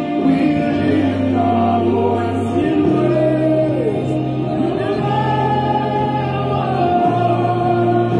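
Gospel worship song: voices singing long held notes that glide between pitches, over sustained low bass notes that change every couple of seconds.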